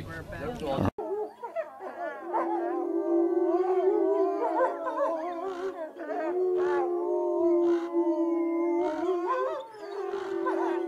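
Wolves howling in a chorus: several long, overlapping howls that glide up and down in pitch. They begin suddenly about a second in.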